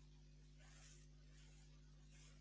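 Near silence: room tone with a steady low hum, and a few faint, soft rustles, such as from handling a crinkly shiny wrapping.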